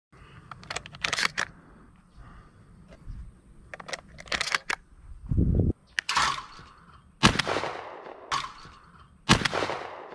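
Shotgun being handled with sharp clicks and clacks in the first half, then a series of sharp reports about a second apart in the second half, each trailing off with an echo.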